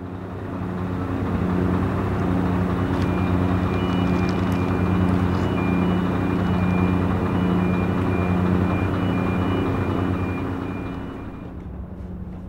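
A heavy diesel engine running steadily, with a high electronic warning beeper sounding in short repeated beeps from a few seconds in. The whole sound eases off slightly near the end.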